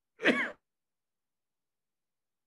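A man's voice over a Zoom call: one short vocal sound, about a third of a second, right at the start.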